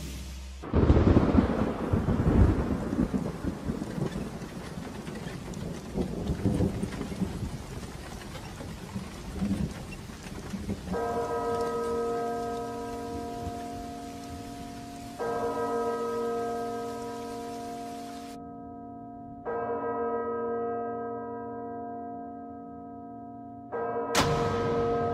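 A sudden loud crash about a second in, followed by a long rumble over a steady hiss for several seconds. Then a church bell tolls four times, about four seconds apart, each stroke ringing on and slowly fading.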